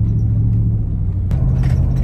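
Inside the cabin of a Nissan Y62 Patrol on the move: the 5.6-litre V8 and road make a steady low drone, which steps up slightly in pitch just past halfway. Loose items rattle lightly in the empty cargo area at the back.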